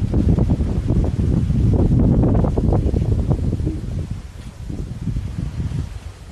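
Wind buffeting the camera microphone, a loud, uneven low rumble that eases off about four seconds in.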